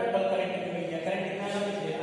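A man's voice, drawn out and held in a chant-like, sing-song tone.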